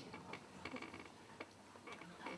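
A near-quiet pause with a few faint, irregular clicks over low room tone.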